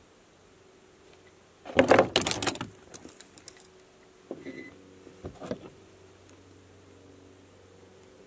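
Handheld wire crimper and pump wires being worked while butt connectors are crimped onto the wire ends: a loud scraping rustle about two seconds in, then a few small clicks and scrapes.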